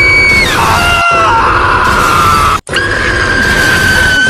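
Loud, distorted high-pitched screams or shrieks over a heavy noisy bed, in short clips joined with abrupt cuts about half a second in, about a second in and with a brief dropout at about two and a half seconds.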